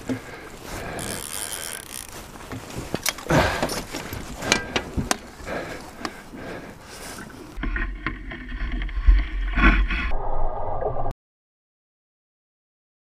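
A hooked muskie splashing at the surface beside a boat as it is scooped into a landing net, with irregular knocks and scrapes of the net and gear against the boat. A low rumble comes in for the last few seconds, then the sound cuts off abruptly about eleven seconds in.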